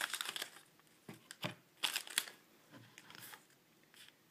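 Foil booster-pack wrapper crinkling as it is torn open, then a few short, separate rustles of trading cards being handled. Faint throughout.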